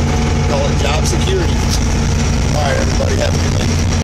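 Heavy equipment's diesel engine running steadily, heard from inside the cab, with a few short voice sounds over it.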